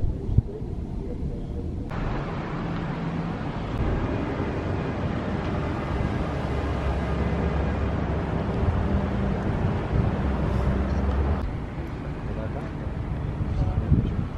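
Outdoor noise of road traffic going by, with wind on the microphone: a steady low rumble that swells in the middle and eases near the end.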